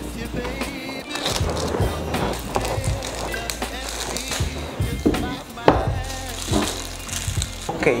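Clear plastic shrink-wrap on a smartphone box crinkling and tearing as it is cut and pulled off, with sharp snaps of the film, the loudest a little past halfway.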